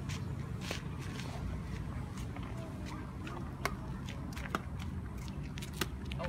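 Sharp light taps of badminton rackets striking a shuttlecock, roughly one every second or so, over a steady low outdoor rumble with faint distant voices.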